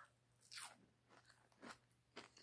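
Faint chewing of a mouthful of fried hash brown, a couple of soft chews about half a second in and near the end.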